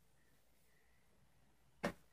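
Near silence, then a single short knock near the end.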